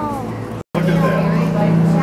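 Voices chattering over a steady low hum in a crowded exhibit hall; at the start one voice glides down in pitch, and about two-thirds of a second in the sound drops out for an instant before the chatter and hum return.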